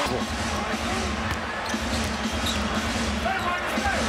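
A basketball being dribbled on a hardwood court, under the steady murmur of an arena crowd.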